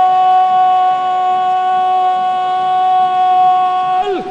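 Football commentator's drawn-out goal cry, a single "gooool" held on one steady pitch for several seconds and dropping in pitch as it gives out at the very end, announcing a goal.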